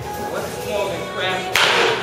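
A baseball bat hitting a pitched ball once about one and a half seconds in: a sudden sharp crack with a brief rush after it, the loudest sound, over background music and voices.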